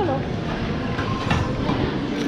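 Busy buffet restaurant: a steady wash of crowd noise and murmured voices, with a few short light clinks from serving utensils and dishes.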